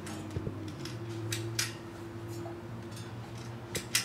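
A few short, sharp clicks of bedside lamp switches being turned on, two about a second in and two near the end, over a steady low hum.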